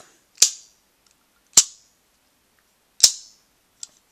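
Hard plastic clicks from a Kamen Rider Fourze Hand Astro Switch gashapon toy being worked: three sharp snaps about a second and a half apart as its spring-loaded hand piece is popped out with the button and pushed back into place, then a faint tick near the end.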